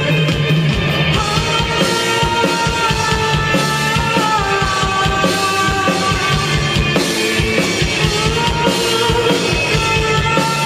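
A live rock band playing loudly and without a break: electric guitars and a drum kit, with a male singer's voice over them.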